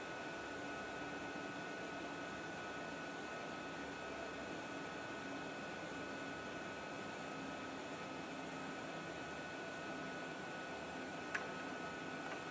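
Faint steady hiss with a faint hum, and a single short click near the end.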